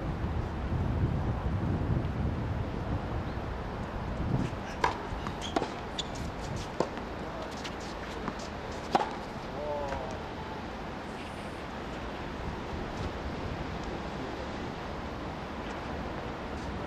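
Tennis ball being hit by rackets and bouncing on a hard court: a handful of sharp pops between about five and nine seconds in, the last the loudest, followed by a brief voice call.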